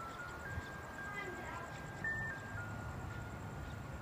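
A slow tune of single pure notes that steps up in pitch over the first second or so, holds, peaks briefly about two seconds in, then steps back down, over a low outdoor rumble.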